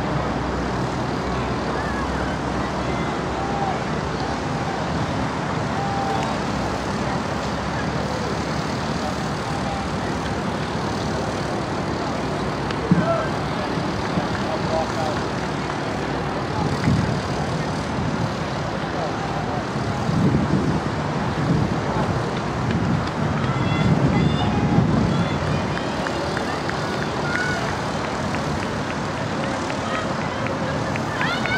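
Outdoor track-meet background noise: a steady hiss with faint distant voices, and surges of low rumble, like wind on the microphone, between about two-thirds and five-sixths of the way through.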